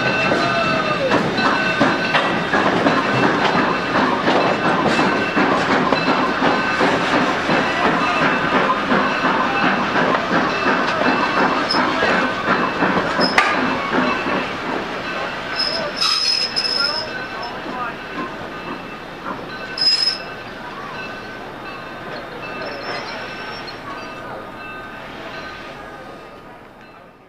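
Railroad passenger coaches rolling on curved track, their wheels squealing with steady high tones over the rumble and clatter. There are a few short, sharper squeals later on, and the sound fades as the train draws away.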